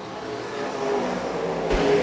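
IMCA dirt Late Model race cars' V8 engines running at speed around the oval, growing louder toward the end as the cars come closer.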